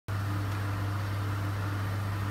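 Steady low machine hum of running laboratory equipment, with an even fan-like hiss over it.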